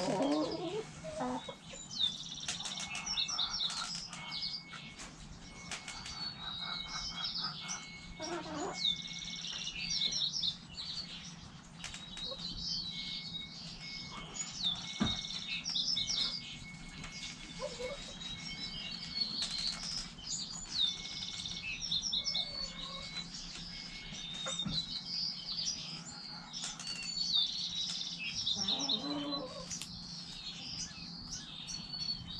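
Wild songbirds chirping and singing over and over, with backyard hens giving a few low clucks near the start, around the middle and near the end. A steady low hum runs beneath.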